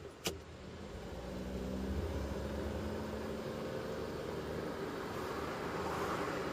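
Car driving along a road: engine and road noise builds over the first two seconds, then holds steady. A single sharp click sounds just after the start.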